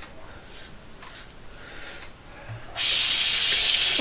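Faint, short scraping strokes of a King C. Gillette double-edge safety razor through stubble, with a Pol Silver blade the shaver calls shot. About three seconds in, a bathroom tap is turned on and water runs steadily.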